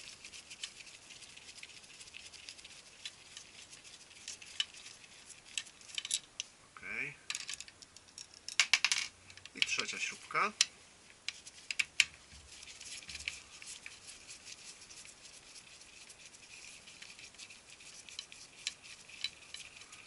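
Screwdriver turning long-threaded screws out of a plastic drum-unit housing, with scattered small clicks and ticks of metal on plastic and a quick run of clicks about nine seconds in.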